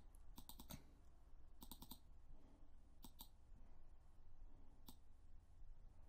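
Faint computer mouse clicks in short runs: several in the first second, a quick run of three or four just under two seconds in, two around three seconds, and a single click near five seconds.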